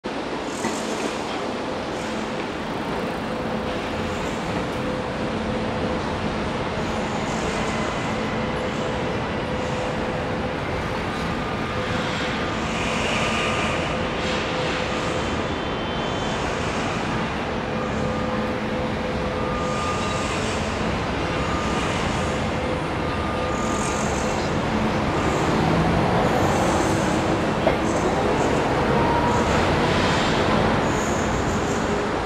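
Steady city street noise: road traffic passing a construction site, over a constant low machine hum, with a rising engine note near the end.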